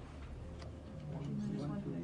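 Quiet room with a faint voice off the microphone in the second half, answering a question, and a few soft ticks.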